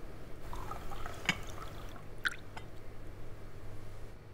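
Tea being poured into a cup for a second or two, with two light clinks against the cup.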